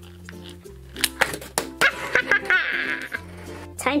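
Background music with a few clicks, then a short warbling electronic zap effect about two and a half seconds in, as a toy blaster is fired.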